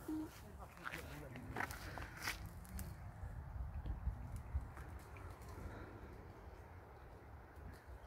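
A few light, crackling footsteps on dry leaf litter and grass in the first seconds, over a low steady rumble, with faint voices in the distance.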